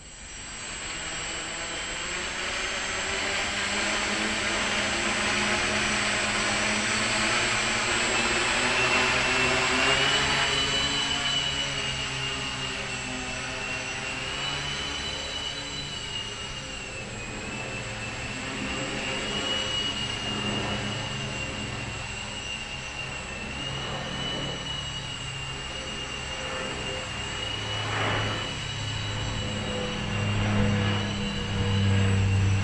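Electric motors and propellers of the SweptBack, a home-built MultiWii multirotor copter, running in flight: a steady whirring buzz with a high whine that wavers up and down in pitch. The sound builds up over the first few seconds.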